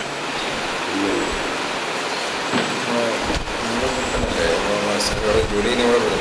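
Steady hiss of room and microphone noise during a changeover between speakers, with faint voices murmuring in the background and a few low knocks from about halfway through.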